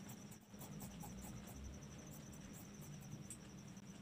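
Faint, irregular snips of dressmaking scissors cutting through cotton fabric along a curve, over a steady, rapidly pulsing high-pitched trill and a low hum.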